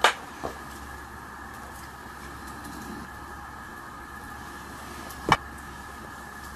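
A steady background hum, like a fan or electrical room noise, broken by a sharp click at the very start, a softer click half a second later, and a louder click about five seconds in.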